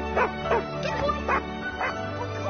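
A dog barking about four times in short, separate barks over background music.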